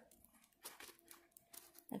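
Near silence, with a few faint crinkles of the clear plastic film covering a diamond-painting canvas as it is handled.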